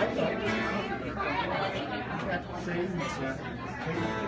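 Café audience chatter: several people talking at once, no single voice standing out.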